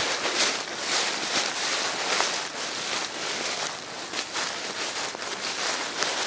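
Footsteps shuffling and crunching through a thick layer of dry fallen leaves on a steep slope, a rustle with each step.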